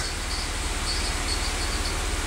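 Steady low rumble under a faint even hiss, with no distinct events.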